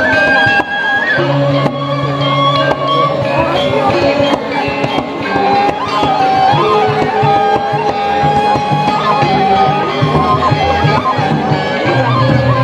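Balinese gamelan playing: a held, sliding flute-like melody over dense metallophones and fast cymbal and drum strokes.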